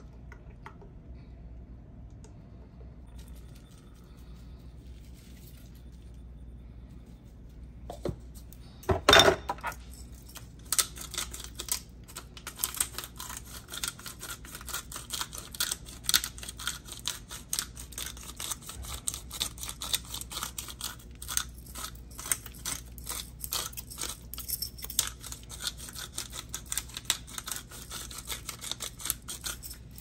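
A hand-twisted spice grinder cracking peppercorns over a sheet pan of vegetables: a dense, irregular crackle of clicks that keeps going for most of the time, after a single knock about nine seconds in.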